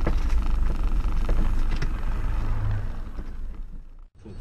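Steady low rumble of a car's engine and road noise heard inside the cabin, with a few faint clicks, fading out near the end.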